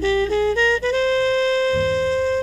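Background music: a saxophone plays a melody that climbs in short steps to one long held note.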